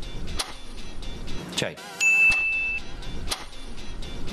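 Editing sound effects over a background music bed: a rising whoosh, then a held high electronic ding of under a second, then a sharp click, marking the change from one question card to the next.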